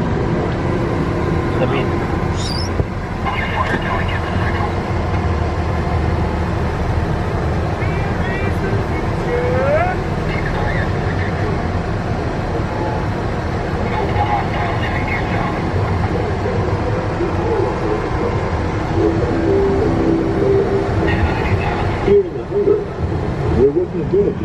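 Steady low rumble of a car moving slowly, heard from inside the cabin, with faint, indistinct voices and effects in the background.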